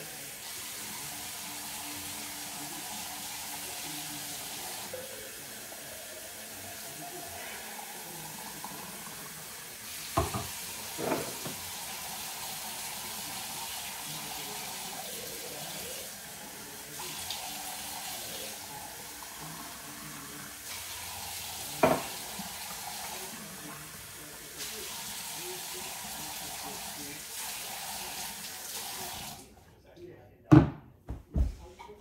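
Kitchen tap running into the sink while dishes are washed by hand under it, the flow sound shifting as things pass through the stream. A few sharp knocks of dishware come about ten, eleven and twenty-two seconds in, and the water shuts off just before the end.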